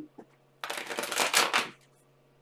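A deck of tarot cards being shuffled by hand: one fast, papery burst of card riffling lasting about a second, starting a little over half a second in.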